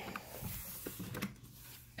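Faint rustling and a few light taps as a cardboard tarot-card box is opened and the deck is slid out by hand.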